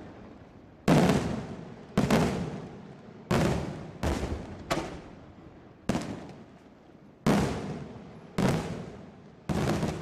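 Daytime fireworks: aerial shells bursting overhead in a string of nine loud bangs at uneven spacing, roughly one a second, each trailing off over about a second.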